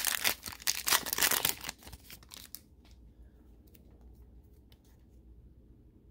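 Foil wrapper of a Panini Mosaic trading-card pack being torn open and crinkled: a dense crackling for the first two seconds, thinning to a few ticks. After that only faint handling noise is left.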